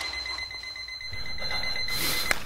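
Bomb timer alarm sound effect: a steady, high-pitched electronic tone held through, over a low rumble that swells from about a second in.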